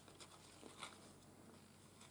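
Near silence, with a few faint brief rustles and taps of thin card being handled and folded.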